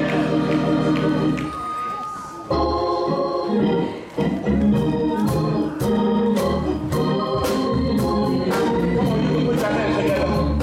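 Gospel church organ playing: a held chord, then from about two and a half seconds in, rhythmic chords over a steady beat of sharp taps about twice a second, opening a choir number.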